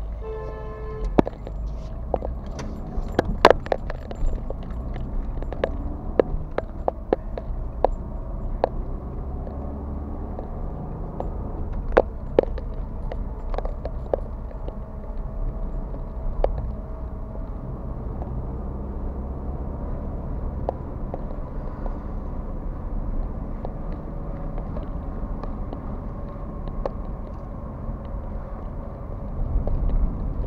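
Car driving, heard from inside the cabin: a steady low engine and road rumble with scattered sharp clicks and rattles, the loudest about three and twelve seconds in. A short pitched tone sounds in the first second.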